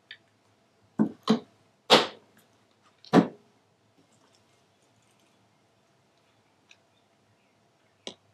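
Handling of an acrylic paint bottle and measuring spoon on a table: four sharp knocks and clacks in quick succession in the first three seconds or so, as the bottle is put down. A few faint ticks follow.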